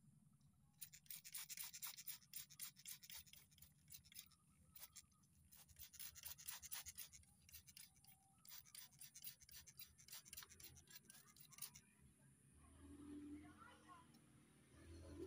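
Trigger spray bottle misting water onto a potted cutting: rapid, short squirts in three runs, quiet and hissy.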